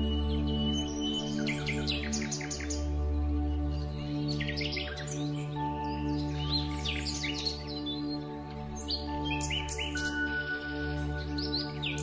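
Calm, slow music with long held low notes, overlaid with songbirds chirping and trilling in frequent short phrases.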